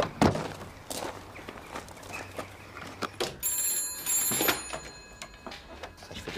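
Telephone bell ringing, starting about halfway through and stopping about two seconds later as it is answered, with a few knocks before it.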